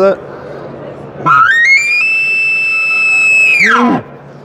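Slayer Calls Enchantress diaphragm elk call blown through a bugle tube, imitating a bull elk's bugle. About a second in, the note climbs in steps to a high, held whistle, then drops steeply just before the end.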